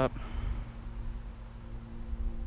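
Insects chirping in a steady, even pulse of about four high chirps a second, over a faint low rumble.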